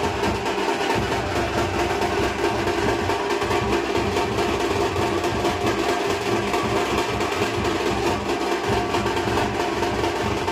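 Traditional Maharashtrian dhol-tasha drumming: barrel dhols and tasha drums beaten with sticks in a fast, dense, unbroken rhythm.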